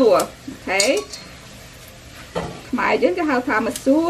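Kitchen scissors snipping soaked glass noodles over a stainless steel bowl, with a sharp click near the end, under a woman's voice talking on and off.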